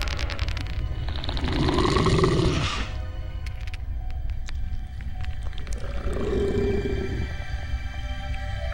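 Horror film soundtrack: a low, steady music drone with a loud creature-like roar about a second in, lasting a couple of seconds, and a weaker, lower one near six seconds.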